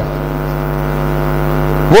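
Steady electrical buzzing hum with many even overtones, typical of mains hum picked up through a public-address microphone system.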